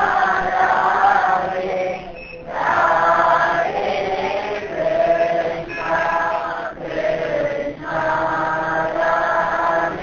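Voices chanting a devotional chant in drawn-out phrases, with short breaks between phrases.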